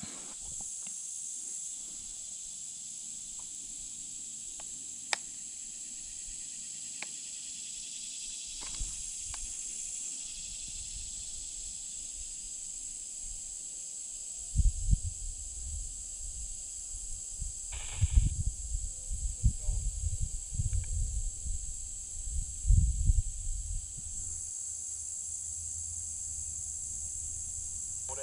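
Steady high-pitched drone of summer insects. From about halfway through, irregular bursts of low rumbling on the microphone come and go for several seconds.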